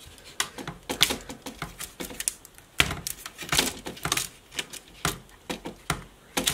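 Plastic casing of a Dell Inspiron Mini 10 netbook creaking, with irregular sharp clicks and snaps as its clips are pried apart by hand.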